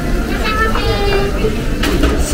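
Busy restaurant dining-room noise: a steady low rumble under voices, with a short sharp click near the end.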